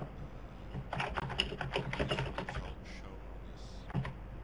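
Rapid typing on a computer keyboard: a quick run of key clicks starting about a second in and lasting a second and a half, with a few scattered clicks after.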